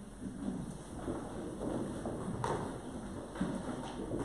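A congregation sitting down: chairs shifting and a room of people rustling and shuffling, with one sharp knock just past halfway.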